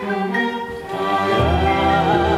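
Chamber string orchestra of violins, cellos and basses playing a sustained instrumental passage of a chanson arrangement. Low notes join about one and a half seconds in, and the music grows louder.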